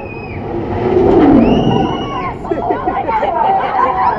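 Drop tower gondola plunging and braking with its riders aboard: a loud rushing sound swells about a second in and falls in pitch. Riders' screams and crowd voices run through it.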